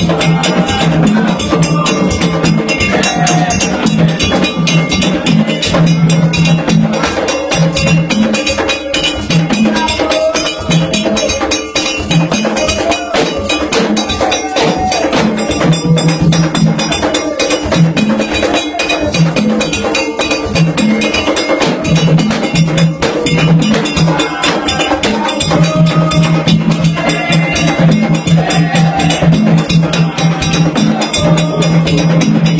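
Gagá band music: drums and bell-like metal percussion struck in a fast, steady rhythm, with a low horn-like note sounding again and again in held blasts.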